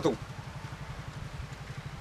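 An engine idling in the background: a steady, low, even rumble with a fine regular pulse.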